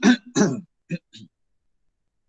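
A person clearing their throat: a few short, voiced rasps over about the first second, then it stops.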